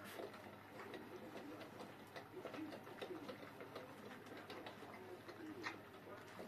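Tibetan mastiff puppies eating from metal bowls: a busy run of quick clicks and smacks from chewing and lapping, with short, low vocal sounds from the puppies.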